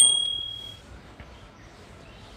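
A single bright bell-like ding sound effect that starts suddenly and rings out for just under a second.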